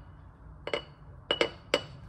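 Small glass bowl knocking against the rim of a glass mason jar as flour is shaken out of it: four sharp glass clinks, each with a brief ring. The first comes alone, and three more follow close together in the second half.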